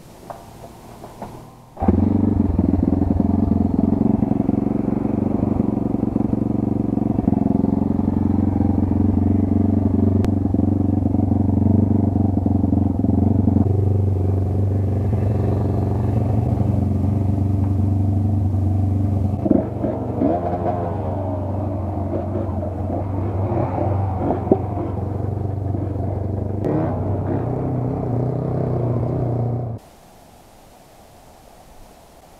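Kayo 140 pit bike's single-cylinder four-stroke engine running at a steady, even speed, heard close up. It starts abruptly about two seconds in and cuts off sharply just before the end.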